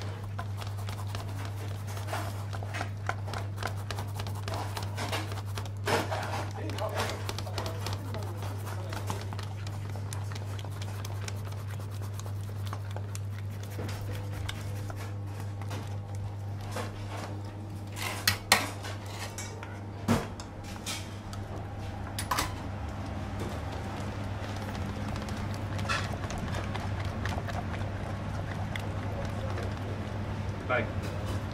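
Busy kitchen sounds: clinks and knocks of pots, pans and utensils over a steady low hum, with a few sharper clatters about two-thirds of the way through.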